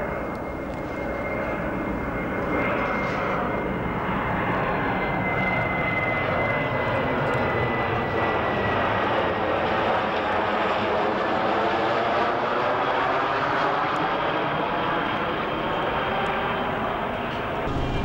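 Jet airliner flying low overhead with its landing lights on: a steady engine rush with a high whine that slowly falls in pitch over the first half as the plane passes.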